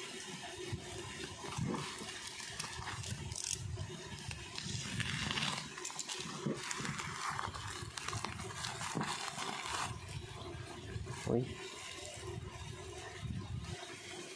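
Plastic bubble-mailer package being slit open with a snap-off utility knife and then pulled apart by hand: irregular crinkling, rustling and scraping of plastic film, with small clicks throughout.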